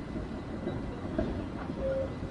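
Steady low rumble of outdoor background noise, with no distinct knocks or strokes.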